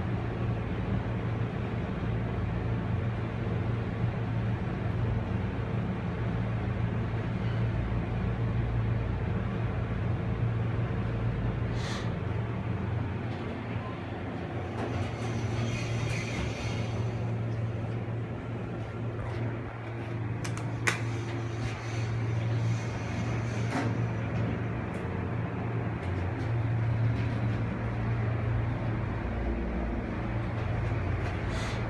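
Dover-built ThyssenKrupp traction elevator heard from inside the cab: a steady low hum as the car runs. About halfway through the doors slide open, with a few sharp clicks.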